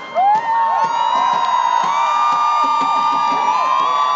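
Large stadium crowd screaming and cheering, many high voices held at once; it swells suddenly just after the start and stays loud and steady.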